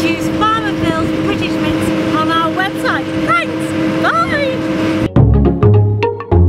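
Strong wind buffeting the microphone, with a steady hum beneath and a voice over it. About five seconds in, it cuts sharply to music with struck, percussive notes.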